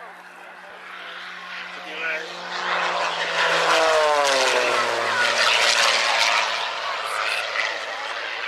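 Aerobatic propeller plane's piston engine making a pass: the engine and propeller grow louder over the first few seconds, drop in pitch as the plane goes by about halfway through, then fade away.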